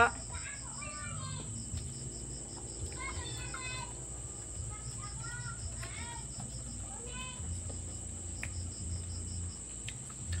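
Steady, high-pitched chirring of insects such as crickets, with faint voices in the background.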